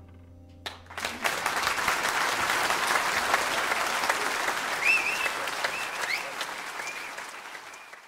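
Concert audience applauding, breaking out under a second in as the piano's final chord dies away, then fading near the end. A few short high calls rise over the clapping in the middle.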